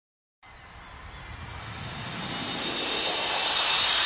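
A rushing whoosh that fades in from silence about half a second in and swells steadily louder and higher: a build-up riser at the start of the soundtrack.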